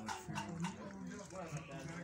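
A man's voice speaking softly, with long drawn-out sounds.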